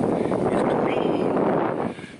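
Wind buffeting the microphone in a 20–25 mph wind: a steady, loud rushing noise.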